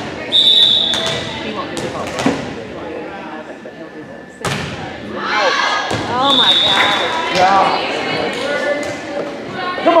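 Referee's whistle, a short steady shrill blast, signalling the serve. It is followed by the thumps of a volleyball being hit during the rally, and a second whistle blast about six seconds in ending the rally. Spectators shout and cheer in the echoing gym.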